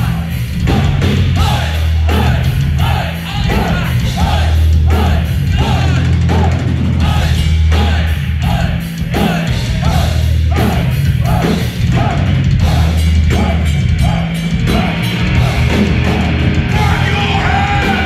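Heavy metal band playing live at full volume on distorted electric guitars, bass and drum kit, with a riff repeating about twice a second.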